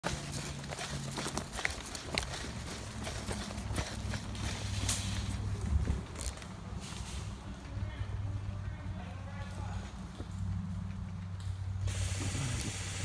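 Footsteps of a person running over leaf litter and twigs, with irregular crunches and knocks and the rustle of carried gear, over a steady low rumble of handling on the microphone.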